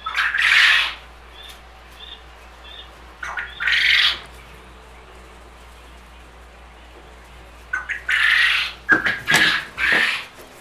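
Masking tape being pulled off the roll in four short, noisy pulls of about a second each: one near the start, one about four seconds in, and two close together near the end.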